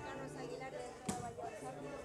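A single sharp smack about a second in, typical of an ecuavoley ball being struck by hand, over faint murmur of spectators' voices.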